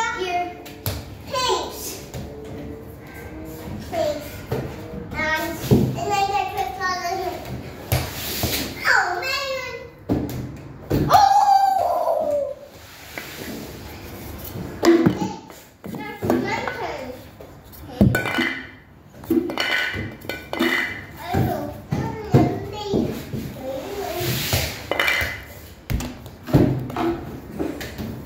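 Young children's voices chattering and calling out while they play, with a few sharp thumps of a small ball thrown at a plastic toy basketball hoop.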